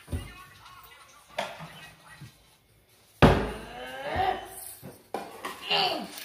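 A sudden loud thump about three seconds in, with smaller knocks before it and voices without clear words after it.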